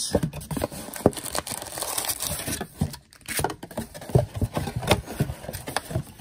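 A cardboard trading-card box being torn open and handled, with a run of irregular rustles, scrapes and small knocks as the flaps are pulled back and the wrapped packs inside are moved.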